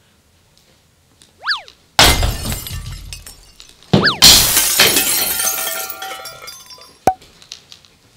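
Added sound effects. A short whistling swoop is followed by a loud crash of breaking glass. The pair comes twice, about two seconds apart, and the second crash rings on longer. A short bright ping sounds near the end.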